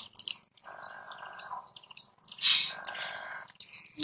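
A baby macaque making soft small sounds while being fed fruit: a few faint clicks, a thin high squeak, and one louder breathy noise about two and a half seconds in.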